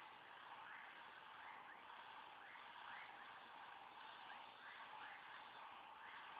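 Near silence: a faint steady hiss with soft rising chirps repeating at an uneven beat, roughly one to two a second.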